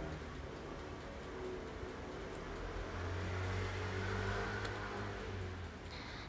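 Faint low hum over quiet room tone, swelling about halfway through and dropping away just before the end.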